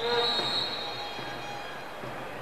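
A single long, high-pitched whistle blast that starts sharply and fades out over about a second and a half.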